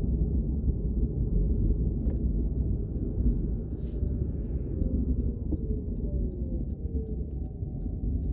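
Steady low road and drive rumble inside a moving car's cabin. A faint tone falls slowly in pitch over the second half.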